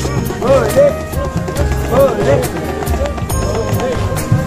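Procession band music: a repeating melody over long held tones and a steady drumbeat, with crowd voices mixed in.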